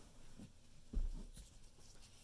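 Faint handling noises from hands moving the balloon and materials around: light rubbing and a soft low bump about a second in.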